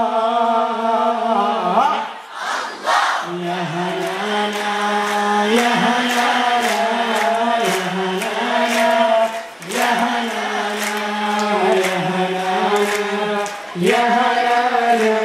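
A group of men chanting an Islamic devotional song in unison through microphones, holding long notes. The singing breaks briefly for breath about two seconds in, near ten seconds, and just before the end. A faint clap keeps time about twice a second through the second half.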